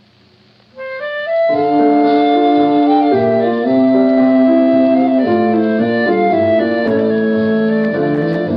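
Instrumental interlude from a 1930s jazz-band song recording: after a brief pause, woodwinds led by clarinet come in about a second in and play sustained, shifting chords.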